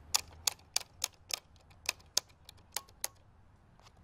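About ten sharp clicks and taps from hands handling a Hickok Model 270 function generator's metal chassis and case parts, fairly quick in the first second and a half, then sparser.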